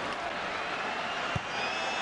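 Football stadium crowd noise, a steady roar from the stands after a near miss at goal, with a single dull thud about a second and a half in.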